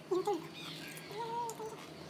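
Two short, high-pitched vocal calls: a loud one just after the start and a longer one about a second and a quarter in.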